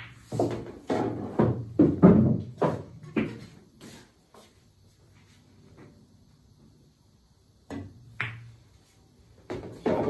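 Pool balls knocking and rolling on the table, with a run of knocks and thuds in the first few seconds. It then goes quiet until, about eight seconds in, the cue tip taps the cue ball and a sharp click of ball striking ball follows.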